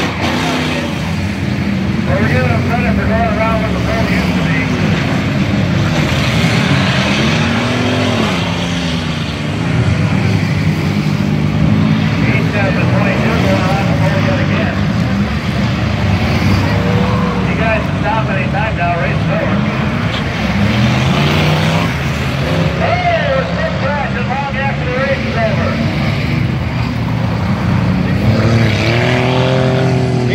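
Several dirt-track race cars' engines revving together, their pitch repeatedly rising and falling as the cars accelerate and lift around the oval.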